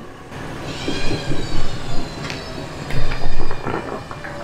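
A steady, high mechanical whine, then a loud deep rumble about three seconds in, as a mud-stuck Toyota FJ Cruiser is recovered on a line.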